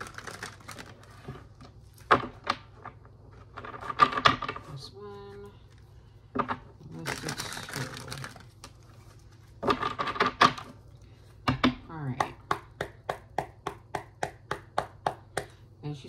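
Tarot cards being shuffled by hand: sharp slaps and short riffling bursts as the deck is cut and shuffled. In the last few seconds comes a quick run of light clicks, about four or five a second, as cards are worked through.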